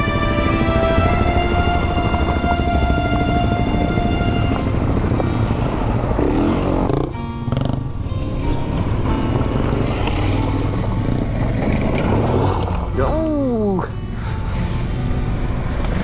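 Off-road motorcycles riding past one after another on a dirt track, engines running steadily at low revs. Near the end, one engine's pitch drops sharply as it goes by.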